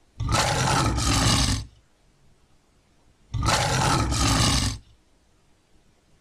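Recorded lion roaring twice, each roar about a second and a half long, with a pause of under two seconds between them.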